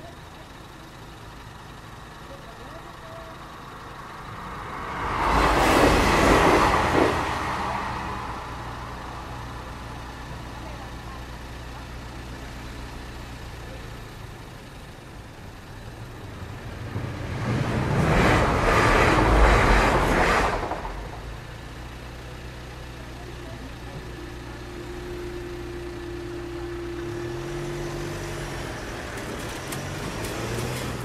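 Two trains pass a level crossing at speed, about twelve seconds apart. Each is a loud rush of wheel and rail noise that swells and fades within two to three seconds. Between the passes, car engines idle at the closed barriers, and a steady hum comes in near the end.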